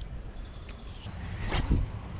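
Spinning rod and reel being cast: a small click, a brief hiss about a second in, and a low rumble of handling near the end.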